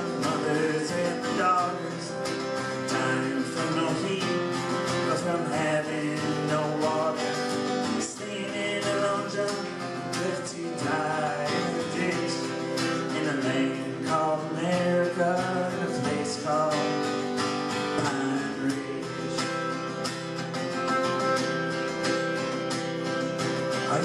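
Acoustic guitar strummed steadily in a folk song's instrumental break between verses.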